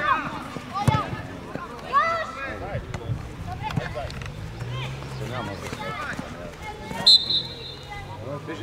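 Scattered shouts from young footballers and onlookers, with a ball being kicked about a second in. About seven seconds in comes the loudest sound, a short, shrill blast of a referee's whistle.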